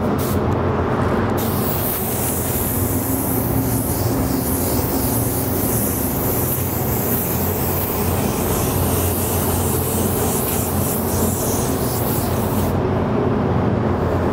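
Gravity-feed paint spray gun hissing steadily as compressed air atomises a light, guide-coat pass of white sparkle flake paint. The hiss starts about a second and a half in and stops about a second before the end, over a steady low hum.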